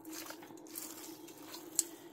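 Silicone spatula breaking up set lime gelatin in a ceramic bowl: faint, wet squishing, with one sharp click near the end.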